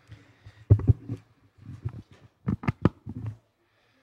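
Irregular knocks and bumps with low muffled noise between them: one sharp knock under a second in, then three quick knocks in a row a little past halfway.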